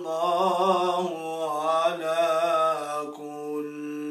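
A man's voice reciting the Quran in the melodic tilawa style, with long held notes that waver in ornaments. The phrase softens about three seconds in.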